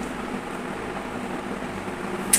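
Steady low hum and hiss of room tone, with no distinct knocks or clatter.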